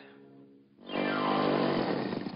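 Cartoon sound effect of a motorcycle engine, a loud buzzing run that starts suddenly about a second in, over faint held orchestral music.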